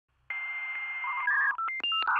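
Electronic intro sound effect: a steady high tone over hiss, then a quick run of short two-tone beeps like touch-tone telephone dialing.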